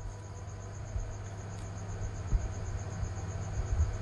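Quiet room tone: a steady low hum with a thin, high-pitched chirp pulsing evenly about seven times a second.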